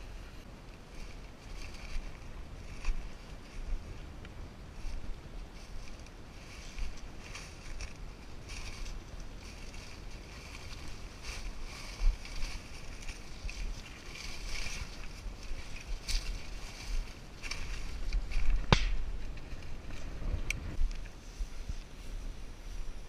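Dry grass and corn stalks brushing and crunching against a walker's legs in uneven bursts, over a low rumble of wind on the microphone, with one sharp click late on.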